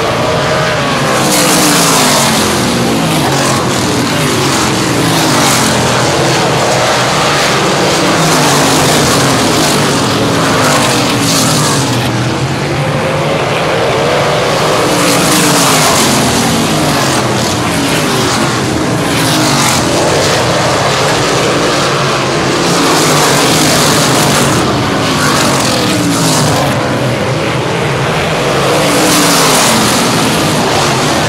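Winged pavement sprint cars racing on an oval, their V8 engines' pitch falling and rising over and over as they lift into the turns and accelerate out. The sound swells louder several times as cars pass close.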